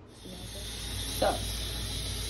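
A steady hissing noise with no pitch or rhythm.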